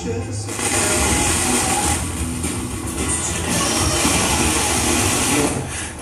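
FM radio broadcast played through the Akai AM-2650 amplifier's speakers from a Pioneer TX-9500 tuner, mostly steady hiss with faint snatches of broadcast sound as the tuner is turned between stations. A talk station comes in at the very end.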